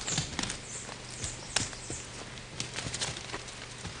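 Irregular light knocks, scuffs and clinks of people climbing over cave rock with their gear, over a faint low hum.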